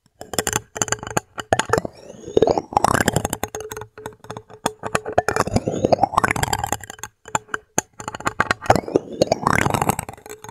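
Plastic spoons scraped and tapped against the hard plastic dome of a star projector lamp, making dense clicks and rubbing strokes. A few of the scrapes rise in pitch, and a faint steady hum runs underneath.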